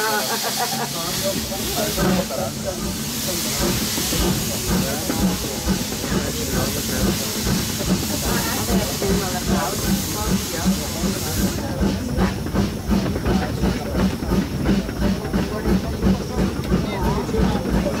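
Steam rack locomotive working, with loud steam hiss over a steady rhythm of exhaust beats. The hiss cuts off suddenly about two-thirds of the way through, leaving the beats and running clatter.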